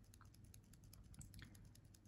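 Very faint, rapid light ticking of fine glitter being sprinkled from its pot onto a gel-coated nail tip and the paper beneath.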